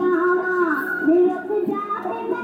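A song with a high female voice singing long, sliding held notes over the music.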